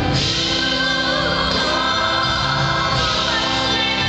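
A church praise team, several singers at microphones, singing a gospel song together over instrumental backing, with long held notes.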